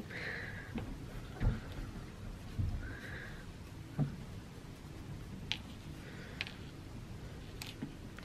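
Handling noise from a stuffed felt figure as a wooden dowel is worked through its stuffed arms: fabric rustling, a few soft thumps in the first half, then brief light ticks.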